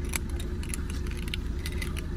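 Keys jangling in short, irregular clinks over a low, steady rumble.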